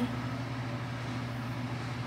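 A steady low hum of room background noise, with no distinct sounds.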